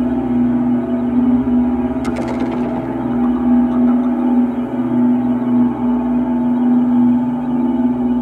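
Dark ambient music: a steady, low sustained drone with several held tones layered over it. About two seconds in, a sudden bright hit rings out briefly above the drone.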